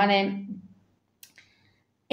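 A woman's voice trailing off on one word, then a near-silent pause broken by two faint, short clicks about a second in.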